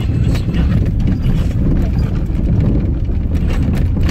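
Car driving along a rough dirt track, heard from inside the cabin: a steady low rumble of tyres and engine with frequent small knocks and clicks from the stones and bumps.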